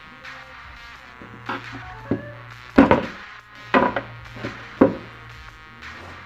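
About six sharp knocks and clicks, the loudest near the middle, as fuel injectors are twisted out of the fuel rail and set down on a plywood bench. Background music plays throughout.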